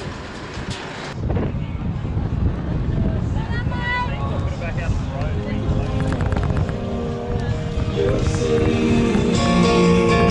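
A brief voice, then after a cut a steady rumbling outdoor noise with voices in it. Acoustic guitar background music fades in about halfway through and grows louder toward the end.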